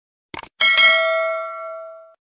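A quick mouse-click sound effect, then a single bell ding that rings out with several pitches and fades over about a second and a half: the notification-bell sound of a subscribe-button animation.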